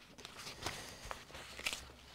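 Faint rustling of loose sheets of paper being handled and turned over, with a few soft taps.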